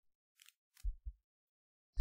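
Two soft, low thumps about a fifth of a second apart, just before the middle, from handling at the desk while the on-screen document is scrolled.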